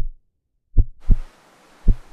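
Heartbeat suspense sound effect of a quiz show's answer reveal: low thumps in lub-dub pairs, about one pair a second. A steady hiss comes in suddenly about a second in.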